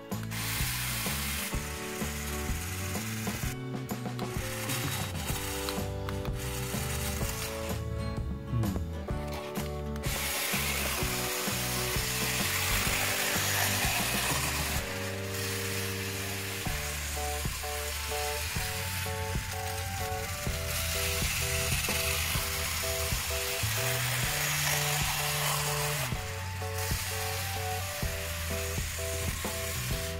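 Battery RC toy locomotive's geared motor and plastic wheels rattling as it hauls five heavy all-acrylic carriages round a plastic track, a load its owner then finds too heavy. The rattle comes in fits for the first ten seconds, then runs steadily.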